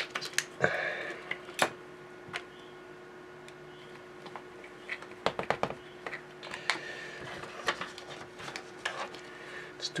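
Light clicks, taps and short rustles of gloved hands handling small objects around a digital kitchen scale on a workbench, with a quick run of clicks about five seconds in, over a faint steady hum.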